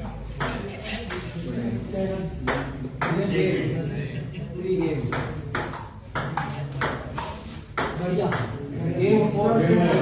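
Table tennis rally: the plastic ball clicks off the rubber bats and the table top, about two hits a second, over the chatter of onlookers.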